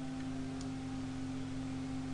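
A steady low hum of two or three constant tones over faint hiss: background noise of the recording setup.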